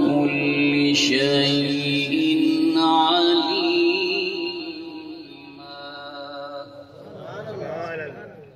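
A man's voice chanting in long, drawn-out held notes, in the style of melodic Quranic recitation. It is loud for the first four seconds or so, then fainter, and swells again near the end.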